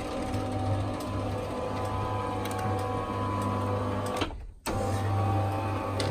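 Electric roller garage door motor running steadily with a low mains hum as it drives the door, triggered by a one-second pulse from a SONOFF relay. The hum breaks off briefly about four and a half seconds in, then carries on.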